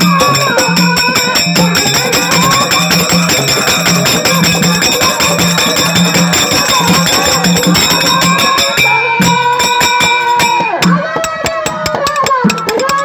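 Kannada dollu pada folk music: a dollu barrel drum beaten in a steady, driving rhythm under a voice singing, with bright metallic percussion ringing throughout. The singer holds one long note near the end.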